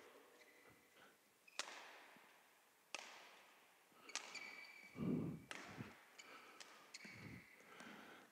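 Badminton rackets striking a shuttlecock in a rally, faint sharp hits, spaced about a second and a half apart at first and then coming quicker, with brief shoe squeaks on the court floor.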